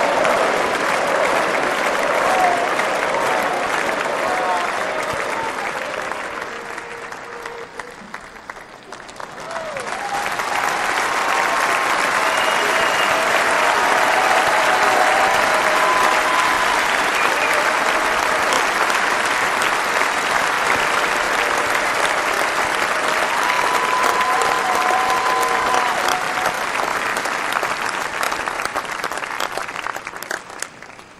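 Large convention crowd applauding, the applause dying down about seven seconds in and swelling again a few seconds later, with voices shouting through it.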